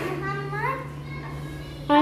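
A child speaking quietly, with a short rising phrase in the first second and a louder voice coming in at the very end, over a steady low hum.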